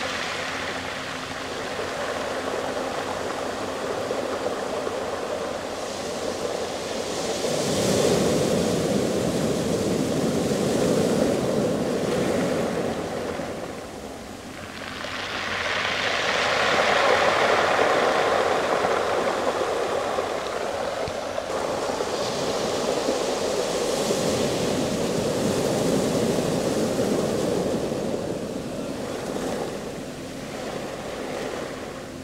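Surf washing up a pebble beach, the water drawing back over the stones so they tumble and rattle. The sound swells and ebbs in three long surges about eight seconds apart.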